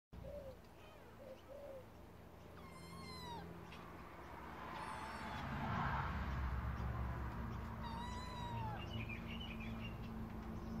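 A kitten trapped under a plastic crate, meowing. Two long high-pitched meows come about five seconds apart, after a few short, lower chirping calls in the first two seconds, over a low background rumble that grows louder about halfway through.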